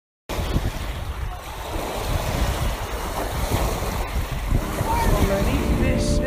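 Ocean surf washing up a sandy beach, with wind rumbling on the microphone. About four and a half seconds in, music fades in over the waves.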